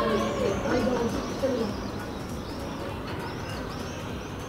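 Boys' voices calling out across an open pitch, fading after about a second and a half, with a bird chirping repeatedly over the outdoor ambience.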